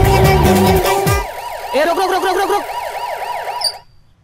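Music with a pounding drum beat stops about a second in. A warbling siren-like sound effect follows, its pitch sweeping up and down about four times a second over a steady tone, and cuts off suddenly just before the end.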